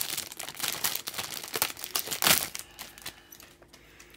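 Clear plastic polybag crinkling as hands pull grey plastic model-kit runners out of it, a dense crackle that peaks just past two seconds and dies away in the last second.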